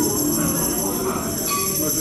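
A live band's amplified sound in a lull between passages: a sustained, hissy drone with steady high-pitched whines, the earlier low notes dying away, and a few guitar notes starting to come back in near the end.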